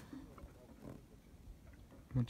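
Near silence: quiet background with a couple of faint, brief low sounds.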